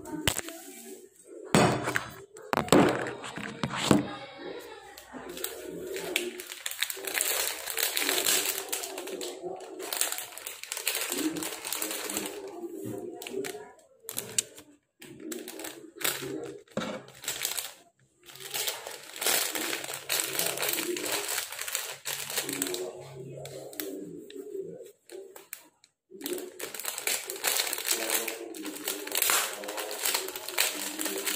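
Plastic packaging of Luwak White Koffie instant-coffee sachets crinkling and rustling as it is handled, with many small clicks and knocks. There are a few brief pauses.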